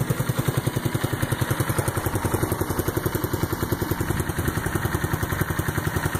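Ice Bear 150cc trike's single-cylinder scooter engine idling steadily, with an even putter of about ten beats a second.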